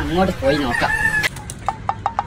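Chicken calls: a drawn-out, pitched call in the first second, then a quick, evenly spaced run of short clucks, about eight a second, starting past the middle.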